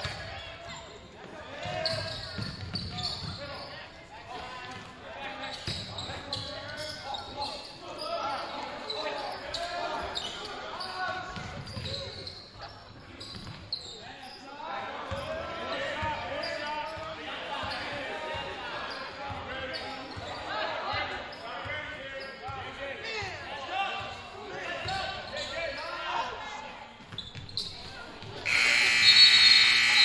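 Basketball dribbling and bouncing on a hardwood gym floor under players' and spectators' voices, then the scoreboard horn sounds loud and steady for about two seconds near the end as the clock runs out, signalling the end of the period.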